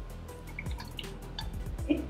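A shot of gin poured from a jigger into a glass already holding syrup and lemon juice, ending in a few small drips and light ticks.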